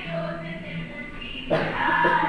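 A group of children singing together, heard through the loudspeakers of a video call. The sound grows suddenly louder and fuller about one and a half seconds in.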